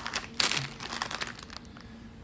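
Plastic packaging crinkling as it is handled, a run of crackles that thins out after about a second and a half.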